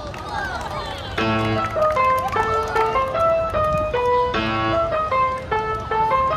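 Outro background music starts about a second in: a simple, bright keyboard melody played one note at a time, about three notes a second. Voices can be heard briefly before it starts.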